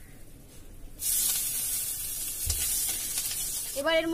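Hot oil in a wok bursts into a sizzle about a second in as chopped onion, garlic and chilli go in, then keeps up a steady frying hiss.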